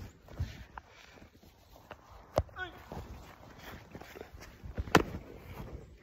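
Footsteps and rustling on a grass yard, with two sharp knocks about two and a half and five seconds in.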